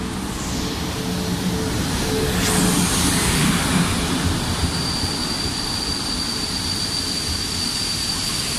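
PKP Intercity EP09 electric locomotive pulling a passenger train into the station and passing close by, its running noise swelling to a peak as it goes past. From about halfway through, the carriages roll by slowly with a steady high-pitched squeal as the train brakes.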